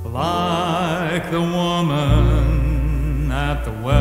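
Instrumental orchestral introduction to a gospel song: a sustained melody with vibrato over a steady low bass, the phrase falling away briefly just before the end.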